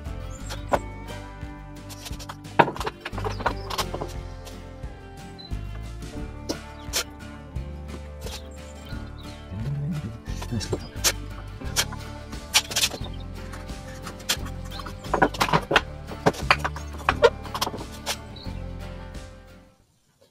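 Background music playing, fading out near the end, over repeated short scrapes and clicks of a wood chisel paring the cheek of a timber half lap joint.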